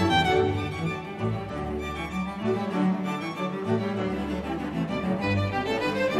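Background music: a string melody over changing low bass notes.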